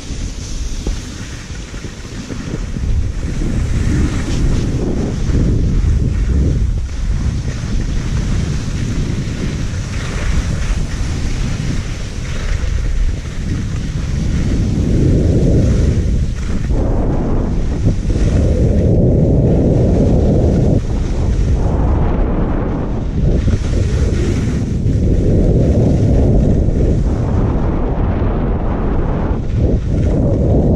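Wind rushing over a GoPro HERO5 Black's microphone as a skier runs downhill, with the skis sliding on the snow. The rush grows louder as speed builds and comes in uneven swells over the second half.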